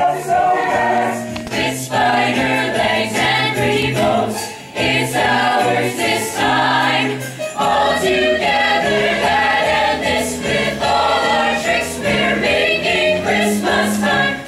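Youth choir singing live in several parts, holding chords over a steady low line.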